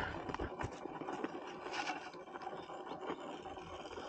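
Axial SCX10 Pro radio-controlled rock crawler climbing a near-vertical rock face: irregular scraping, clicking and knocking of its tyres and chassis against the rock.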